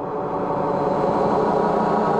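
Ambient music: a sustained, gong-like drone with many ringing overtones, slowly swelling in level.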